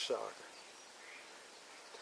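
A man's voice finishing a word, then a pause filled only by faint, steady outdoor background noise.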